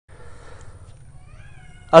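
A faint, short wavering call, gliding slightly upward, about halfway through, over a low steady rumble; a man's voice begins right at the end.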